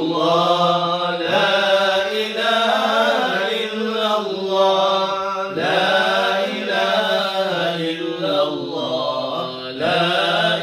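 Men's voices chanting Islamic dhikr together in long, held, melodic phrases, the pitch shifting every second or two without a pause.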